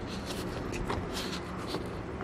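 Hands handling a small power inverter and the electric blower's cable: scattered light rustles, scrapes and small clicks over a faint low steady hum.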